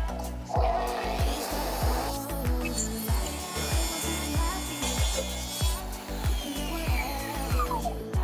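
Makita plunge-cut track saw cutting through pressure-treated lumber along its guide rail for about five seconds. Near the end its blade winds down with a falling whine. Background music with a steady beat plays throughout.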